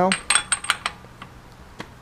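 A few light metallic clinks in the first second, with a faint high ring, as a steel socket is fitted against the front wheel hub; after that only faint background.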